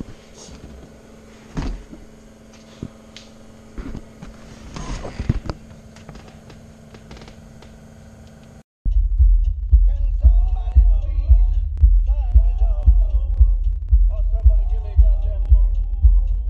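A few light knocks and handling noises over a steady low hum. About nine seconds in, after a sudden cut, a song with a singing voice starts playing loud over heavy, deep bass from the car's stereo and custom subwoofer box.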